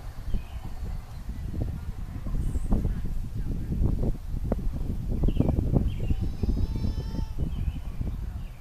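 Birds chirping, with one warbling call near the end, over a low, gusty rumble of wind on the microphone.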